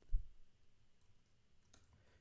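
Computer keyboard keystrokes while editing code: one low, dull thump just after the start, then a couple of faint clicks.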